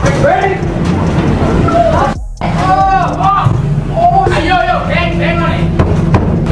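Young people shouting and yelling in the echoing cargo box of a moving truck, over a steady low rumble. The sound cuts out briefly a little after two seconds.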